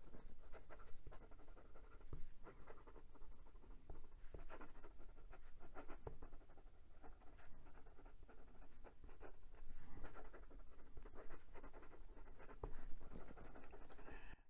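Fountain pen nib scratching across notebook paper in quick handwriting: a faint, irregular run of short pen strokes with small gaps between letters and words. The feed keeps up with the fast writing, though the ink feels a bit dry.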